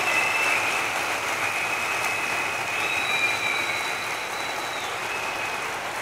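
Large audience applauding, the clapping slowly dying down.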